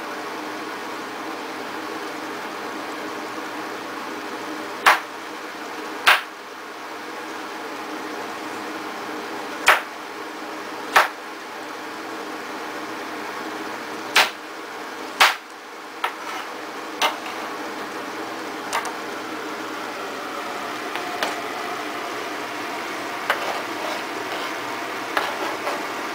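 Kitchen knife cutting peeled potatoes on a cutting board: sharp knocks of the blade striking the board, several in pairs about a second apart, with lighter taps in the second half, over a steady low room hum.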